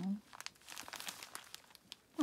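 Small clear plastic zip-lock bags of square resin diamond-painting drills crinkling faintly in the hand, in short scattered crackles.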